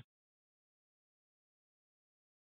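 Dead silence on a digital scanner feed: the squelch is closed between radio transmissions, so no audio passes at all.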